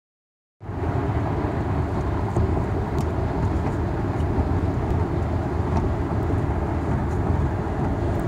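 Steady low road and engine rumble of a car driving on a freeway, heard from inside the moving car, starting about half a second in.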